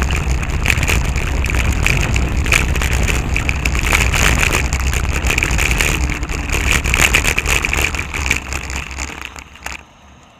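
Wind buffeting a bicycle-mounted camera's microphone while riding, with road rumble and frequent sharp rattling clicks. It fades over the last two seconds as the bike slows.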